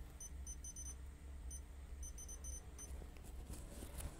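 Short high electronic beeps, about ten in irregular clusters, as buttons are pressed to set a digital cooking timer, over a faint low steady hum.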